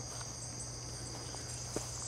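Insects, crickets among them, chirping in a steady high-pitched chorus over a faint low hum, with one faint tick near the end.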